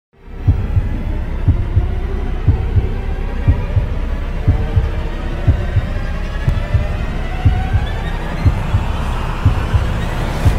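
Countdown sound effect: a heartbeat-like double thump once a second over a steady low drone, with a tone slowly rising in pitch beneath it.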